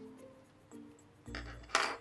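Quiet background music with steady held notes, then a soft low thump and a brief noisy rustle near the end from hands handling the craft piece.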